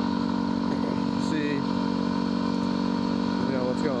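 Yamaha WR250R dual-sport motorcycle's single-cylinder engine running at a steady cruising speed, with no revving or gear changes.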